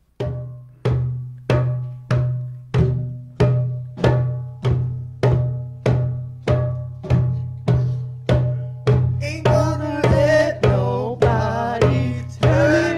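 A hand drum struck in a slow, steady beat, about three strikes every two seconds, each stroke with a low ringing tone. About nine seconds in, voices start singing over the beat.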